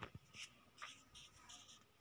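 Near silence with faint, short scratchy rustles and soft ticks, several each second.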